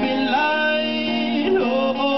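A man singing into a microphone, holding long notes that bend and glide, over an acoustic guitar.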